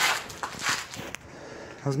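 Footsteps and scuffing on a concrete floor strewn with rubble, with a sharp click about a second in.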